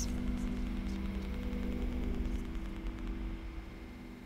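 A low ambient drone of several held tones over a soft hiss, fading out gradually.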